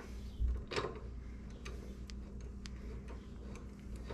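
Faint, light metallic ticks and clicks of a hand tool and bolts as the foot peg mount bolts are started into their threads on a Harley-Davidson Sportster, with one louder click just under a second in.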